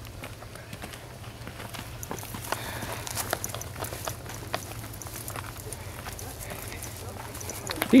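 Footsteps of several hikers on a dry dirt trail strewn with dead leaves: irregular crunches and scuffs. A voice speaks right at the end.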